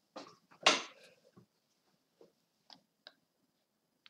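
Sparse clicks of a computer mouse and online chess-move sounds during a fast game, with one louder, brief noisy burst about three quarters of a second in.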